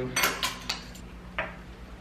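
Metal measuring spoons clinking as teaspoons of yeast are scooped from a small jar: three quick clinks in the first second, then one more about a second and a half in.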